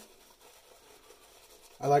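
Faint, soft brushing of a two-band badger shaving brush working shave soap lather over the face. A man starts talking near the end.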